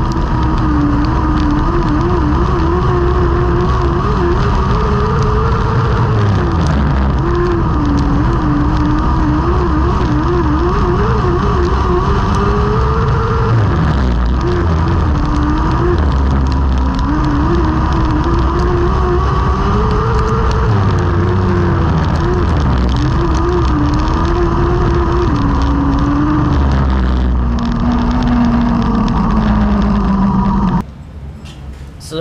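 TQ midget race car's engine heard onboard at racing speed on a dirt oval, its note rising and falling in repeated swells and wobbling in places. Near the end it drops to a lower, steadier note.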